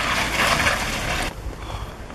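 Nissan pickup truck running as it manoeuvres on a wet cobblestone street, under a fairly loud, even noise. About a second in, the sound drops abruptly to a quieter outdoor hiss.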